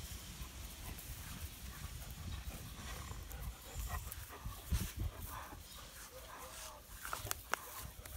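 Dogs at play on grass: movement and faint dog sounds over a steady low rumble, with a few sharp clicks toward the end.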